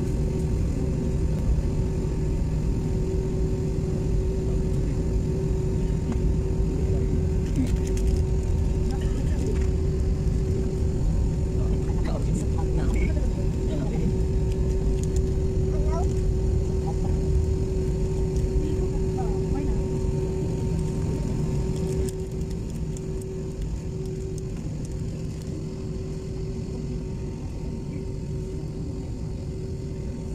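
Jet airliner on its takeoff roll, heard from inside the cabin: a loud, steady low rumble of engines and runway with a steady engine tone over it. The rumble eases a little past two-thirds of the way through.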